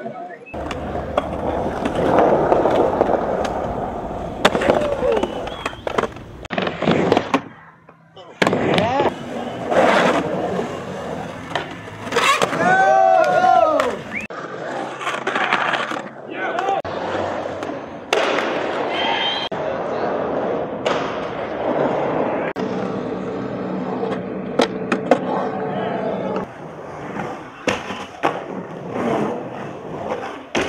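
Skateboard wheels rolling and carving on concrete pool and bowl walls, a steady roll that swells and fades with each pass, broken by sharp clacks of the board and trucks. It drops out briefly near the eighth second between runs, and a rising-and-falling whirr sounds around the middle.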